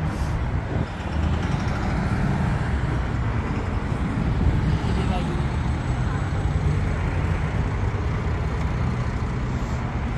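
Steady road traffic noise, with a bus's engine running among the passing vehicles.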